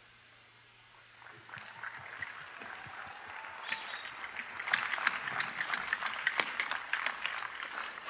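Audience applause, starting about a second in and building steadily louder.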